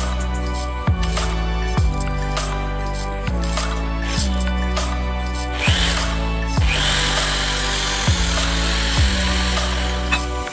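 Background music with a steady beat. About halfway through, the Mitsushi 800 W electric impact drill spins up briefly with a screw bit in the chuck and no load. It then runs for about three seconds as a high whine over the music and stops just before the end.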